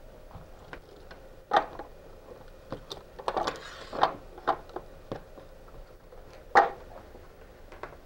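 Handling noise from an electrical cable being pulled through a coiled cord and dragged over a tabletop and plastic motor housing: scattered light clicks and rustles, with a few sharper knocks about one and a half, four and six and a half seconds in.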